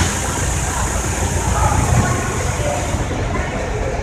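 Small shuttle bus driving off, its engine running under a steady hiss of road noise, with faint voices in the background.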